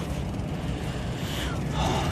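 Steady low hum and rumble of running HVAC equipment.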